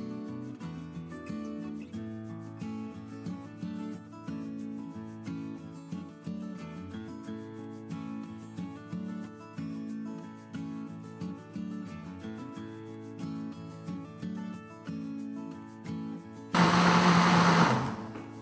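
Background music with a steady beat. About a second and a half before the end, an electric countertop blender starts and runs loudly with a low motor hum, blending peeled raw pinhão (araucaria pine nuts) with water into a liquid pudding batter.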